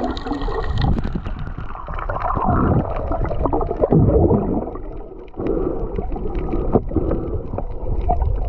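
Muffled water sloshing and gurgling around a snorkeler's camera, in irregular swells with a brief lull about five seconds in.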